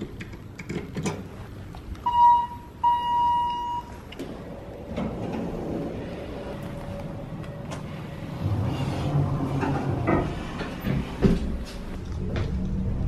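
Elevator arrival chime: two dings at the same pitch about two seconds in, the second one longer. The elevator doors then slide, and from about eight and a half seconds the car hums low as it descends, with a few handling knocks.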